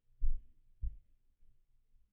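Two dull, low thumps about half a second apart, the first the louder.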